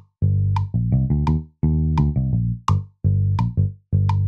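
A GarageBand bass track playing back in a loop: a run of low, plucked bass notes at 85 beats per minute. A metronome click ticks on each beat.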